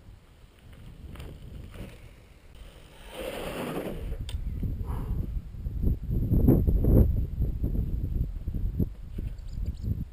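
Wind rumbling on the camera microphone, much louder in the second half. About three seconds in there is a brief rustle, likely the mountain bike's tyres rolling over grass.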